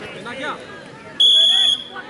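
Referee's whistle: one short, loud, steady blast of about half a second, the signal that the penalty kick may be taken, over spectators chattering.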